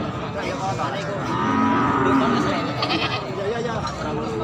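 A goat bleating: one long call starting about a second in and lasting over a second, over people talking in the background.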